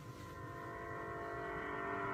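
Instrumental intro of the song's backing track: a sustained chord fading in and growing steadily louder.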